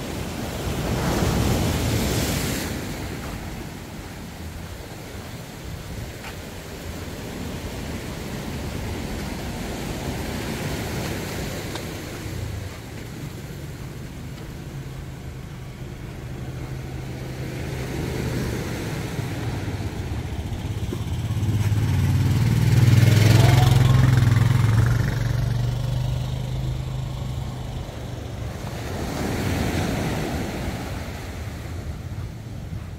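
Surf washing onto a sandy beach, with the low hum of a passing engine that builds through the middle, is loudest about two-thirds of the way in with a short rising whine, then fades.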